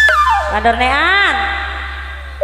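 Gambang kromong music: the held chord breaks off and a single melodic line slides steeply down in pitch, then rises and falls again in one long wailing glide.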